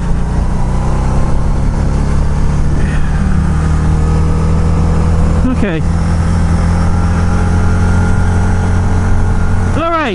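A 2006 Harley-Davidson V-Rod Night Rod's liquid-cooled V-twin running steadily under way, picked up by a microphone inside the rider's helmet along with road noise.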